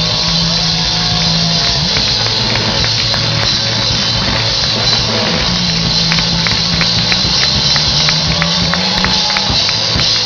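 Live rock band playing: electric guitars, bass and drum kit, loud and steady. Through the second half a regular run of sharp hits keeps the beat.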